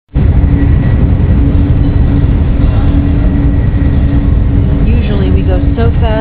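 High-speed Eurostar train running at speed, heard from inside the carriage: a loud, steady low rumble with a constant hum over it. A woman's voice starts near the end.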